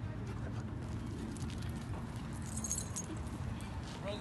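Outdoor background noise: a steady low rumble with a few faint clicks, and a brief high tinkling about two and a half seconds in.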